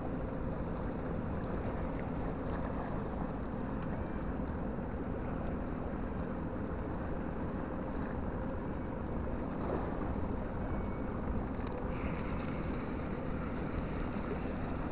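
Steady low rumble of outdoor background noise, with a faint steady hum running under it.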